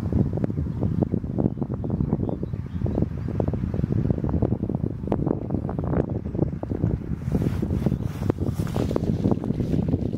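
Wind buffeting the microphone: a dense, low rumble with irregular crackling gusts.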